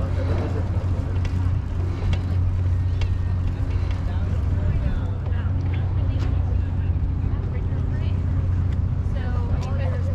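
Steady low wind rumble on the microphone of a moving bike-mounted action camera, with faint, scattered voices in the background, most noticeable near the end.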